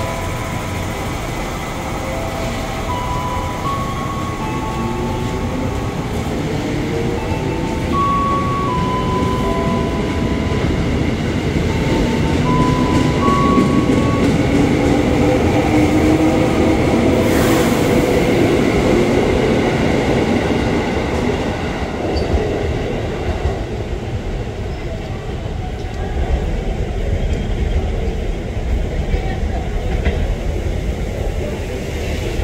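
A JR 205 series electric commuter train pulling away from the platform and gathering speed as its cars roll past, with the whine of its traction motors rising in pitch. Short steady tones step between pitches in the first half. The train is loudest in the middle and eases off toward the end.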